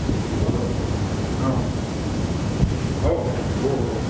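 Steady low rumbling background noise in a meeting room, with faint indistinct voices.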